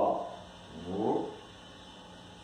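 A man's low, wordless voice, making drawn-out sounds that fall in pitch: one tails off at the start and another comes about a second in.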